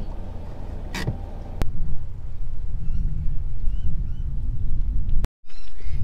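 Low rumble of a slowly moving car heard from inside the cab, louder from about two seconds in, with a click near the start and a few faint short bird chirps over it in the middle.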